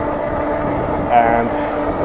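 Electric mountain bike's rear hub motor whining steadily under pedal assist at cruising speed, over an even rush of tyre and wind noise.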